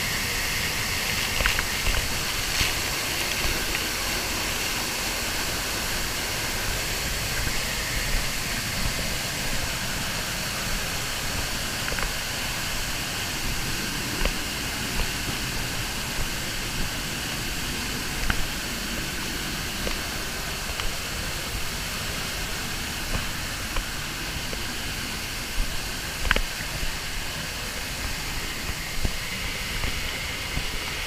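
Steady rush of a waterfall's falling water heard close up, with a few brief sharp taps on top.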